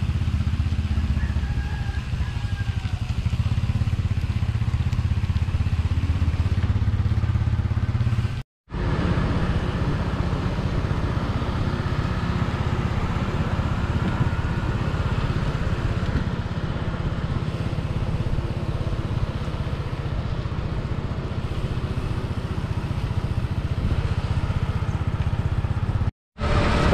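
Motorcycle engine running steadily under way, with a low rumble of road and wind noise. It drops out for an instant about eight and a half seconds in, then carries on.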